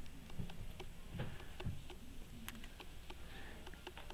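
Faint handling noise: scattered small clicks and a couple of soft thumps, with a low room hum underneath.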